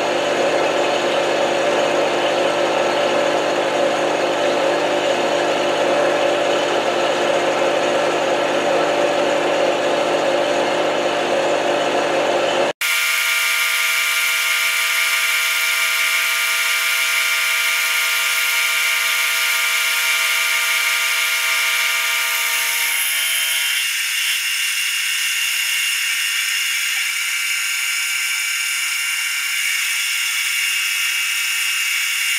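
Milling machine running with an end mill cutting a metal block: a steady machine whine made up of several steady tones. About a third of the way in, the sound cuts off abruptly at an edit and comes back thinner and higher, without its low end.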